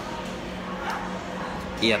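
Background room noise with a steady low hum during a pause in a man's speech; he starts speaking again just before the end.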